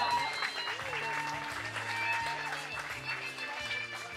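Guests clapping over background music with held bass notes.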